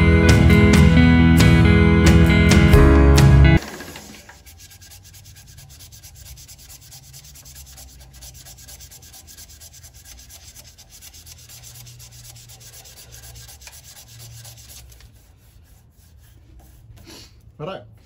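Guitar background music for the first few seconds, cutting off abruptly. Then a quieter steady rubbing hiss of sandpaper held against a Queensland myrtle pen blank spinning on a wood lathe, fading out near the end.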